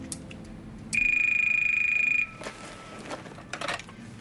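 A telephone ringing once: a single steady, high electronic ring of a little over a second, the loudest sound here. It is followed by a few light clicks and knocks as the handset is picked up.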